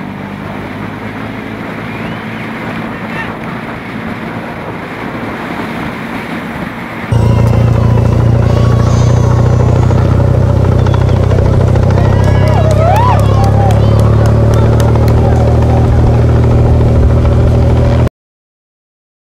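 Live road-race ambience: rushing wind noise on a moving microphone over a faint engine, then about seven seconds in a much louder steady engine drone of escort motorcycles, with voices calling out over it.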